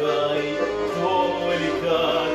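A garmon and a bayan playing together as accompaniment to a Russian song, with a man singing over them.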